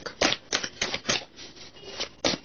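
A tarot deck being shuffled by hand: five short snapping clicks of cards in about the first second, then a pause.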